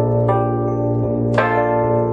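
Electronic keyboard music with a bell-like sound: a note struck about a third of a second in and a stronger one just past halfway, each ringing on over a steady low drone.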